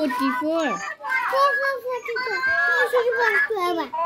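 A young boy's voice, talking without a break in a high, sing-song way.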